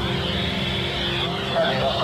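Hiss from a handheld two-way radio with the squelch open, a garbled voice coming through it near the end, over a steady low drone.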